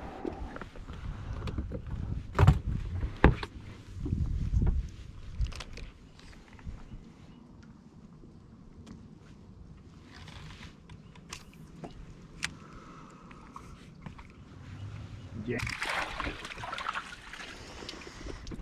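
Knocks and low thumps of fishing gear being handled in a small boat, the loudest two in quick succession about two and a half seconds in, followed by a few light clicks.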